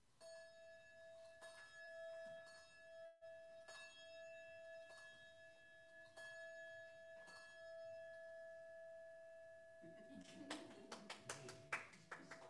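A brass handbell rung by hand, struck about once a second so that one faint, steady ringing note carries on. Near the end a quick cluster of clicks and knocks comes in over the fading ring.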